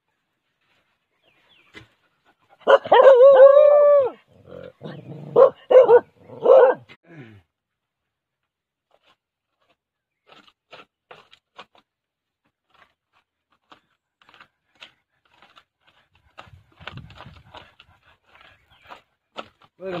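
A dog gives one long high yelp, then three short barks. Faint scrapes and knocks of hand digging in soil follow.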